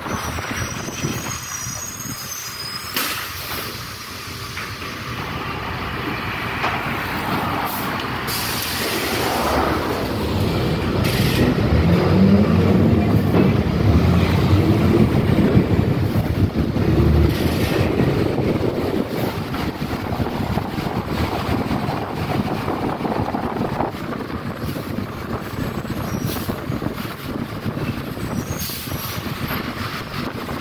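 City bus driving on a wet road, heard from inside the cabin: engine and tyre noise with rattling from the body. The engine grows louder through the middle, then eases off.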